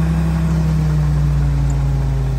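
Willys MB's original L134 four-cylinder engine running steadily under load as the Jeep crawls up a rock ledge in very low gearing.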